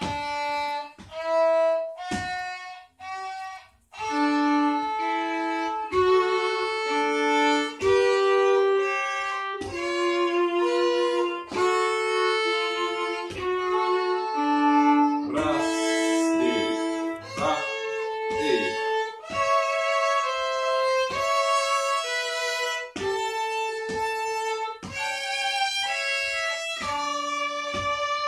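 A violin played with the bow: a slow tune of held notes, a few short separate notes at first, then playing on with hardly a break from about four seconds in.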